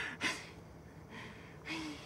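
A man breathing audibly between sung lines: two quick gasping breaths at the start, a fainter breath about a second in, and a short breathy sigh with a faint voiced note near the end.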